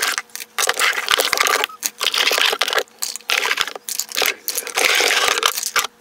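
Plastic skincare jars and tubes rattling and clattering against each other as they are pulled by the handful from a drawer, in a run of noisy bursts with short gaps between them.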